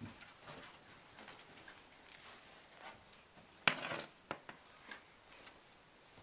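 Faint rustling and scattered small knocks close to the microphone, with one sharper knock a little past halfway, as the cat moves right against the camera.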